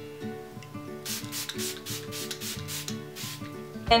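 A facial primer-water spray bottle being pumped several times in quick succession, each spray a short hiss, over background acoustic guitar music.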